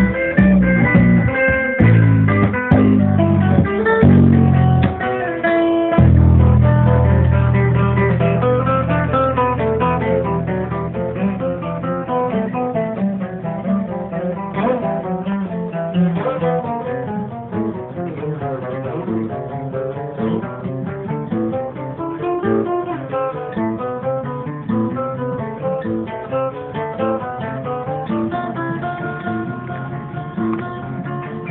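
Improvised instrumental music on plucked strings: deep bass notes, one held and fading away from about six seconds in, under a steady run of picked guitar notes.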